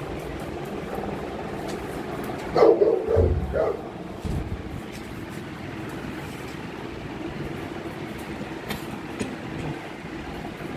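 A dog gives a few quick barks in a row about two and a half seconds in, over steady background noise.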